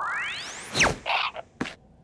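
Cartoon sound effects: a whistle-like tone glides upward and ends in a sharp whack about three quarters of a second in. A quick falling glide and a short whoosh follow, with a small click near the end.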